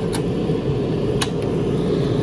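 Portable butane camp stove's piezo igniter clicking twice as the control knob is turned, lighting the burner, over a steady low rumble.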